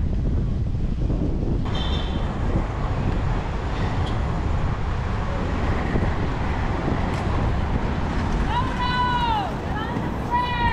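Wind buffeting the microphone over the steady low rumble of inline skate wheels rolling on pavement. Near the end come two short, high, rising-and-falling calls.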